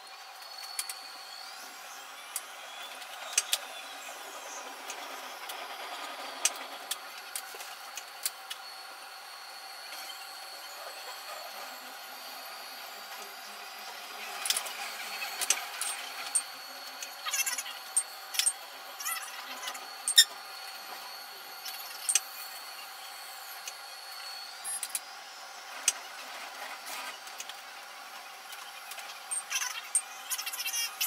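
Metro train running between stations: a steady high whine that rises about a second in and falls away near the end, with many sharp clicks and rattles from the wheels and track.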